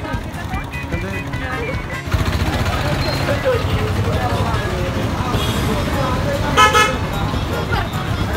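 Bus engine running at a bus stand, with a vehicle horn tooting briefly about six and a half seconds in, amid people's voices.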